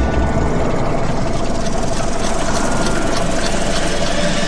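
A fast, steady mechanical whirring rattle made of rapid fine ticks over a thin steady hum. It is a sound effect for an on-screen year counter rolling along a timeline.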